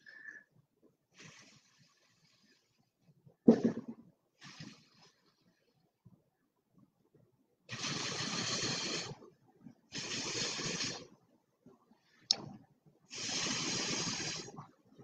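Three long puffs of breath blown through a drinking straw onto wet acrylic paint, each a rushing hiss lasting a second or so, starting about eight seconds in. A short thump about three and a half seconds in.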